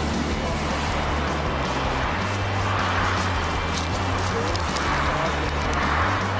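A heavy machine's diesel engine running steadily as a low hum, with general outdoor noise over it.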